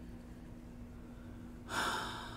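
Quiet room tone with a faint steady hum, then, near the end, a woman drawing in a breath through her open mouth, starting suddenly and fading out.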